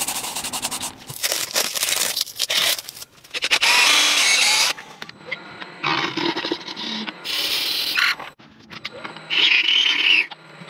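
A quick run of scraping and rubbing sounds that change abruptly every second or so. From about the middle on, a wood lathe turns while a gouge cuts into the spinning wood in short scraping passes.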